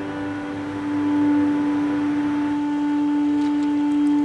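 Background music: a single low note held steadily, with overtones, like a drone. A rushing noise swells under it in the middle.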